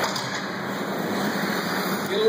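1/10-scale electric 2wd RC buggies running on an indoor dirt track: a steady wash of motor whine and tyre noise on the clay, with no single loud event.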